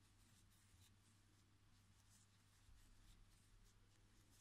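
Near silence: faint room tone with a steady low hum and faint, soft scratchy rustles of a crochet hook working yarn.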